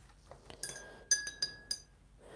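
A watercolour brush tapping against a glass rinse-water jar: about five light, ringing clinks in quick succession, as when a brush is rinsed.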